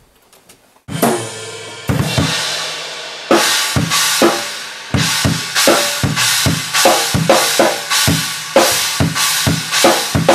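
Acoustic drum kit played in a studio take. After a quiet first second come three heavy hits with ringing cymbal wash, each a second or so apart, then a steady beat of kick, snare and cymbals from about five seconds in.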